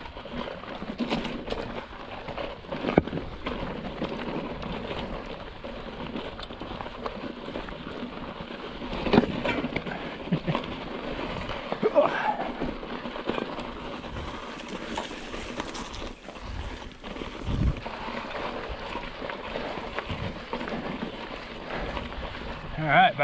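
Hardtail mountain bike going down steep, loose, sharp rock: tyres crunching over scree, with irregular knocks and clatter of rocks and the bike's frame.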